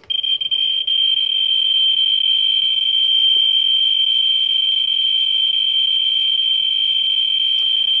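Geiger counter's speaker sounding a continuous high-pitched buzz as its probe sits over a radium-painted toggle switch. The clicks come so fast that they run together into one steady tone, the sign of a high count rate from the radium.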